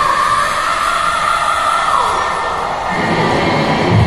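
Live rock band playing in an arena, heard from far back in the hall: a long held high note that drops away about two seconds in, then bass and guitar come back in near the end.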